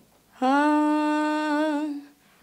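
A woman's voice holding one long, steady unaccompanied note, starting about half a second in and wavering slightly near the end. It is the opening of an unaccompanied Punjabi song.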